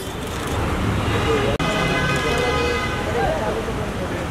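Street traffic rumble with a car horn sounding steadily for about a second and a half near the middle.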